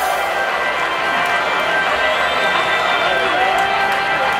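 Live electronic funk band playing through a large sound system: a held synthesizer chord sustains steadily, with voices from the crowd rising and falling over it.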